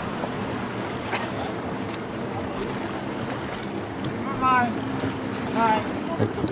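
Longtail boat engine running steadily under wind and water noise, with two short high-pitched calls about four and a half and nearly six seconds in.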